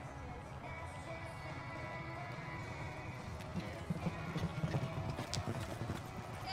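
Hoofbeats of a reining horse loping on soft arena dirt, dull thuds in an uneven rhythm that grow louder and more distinct in the second half.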